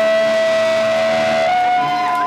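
Electric guitar feedback: a steady, sustained high tone held over the end of a rock song, stepping slightly up in pitch about one and a half seconds in.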